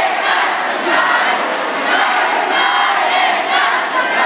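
A large crowd shouting and cheering, many voices at once, loud and continuous.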